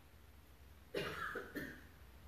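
A person coughs twice in quick succession, about a second in, over a faint low room hum.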